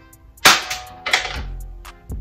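Spring-powered toy AK-style (Draco) BB gun firing: a sharp snap about half a second in, then a second snap about two-thirds of a second later, over background music with a steady beat.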